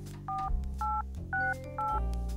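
Phone keypad tones as fingers tap a smartphone screen: four short beeps about half a second apart, each two pitches sounding together like touch-tone dialing.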